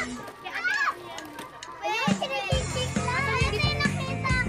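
Young children calling out and chattering in high voices over background music with a steady bass beat; the music drops away for the first half and comes back in a little past halfway.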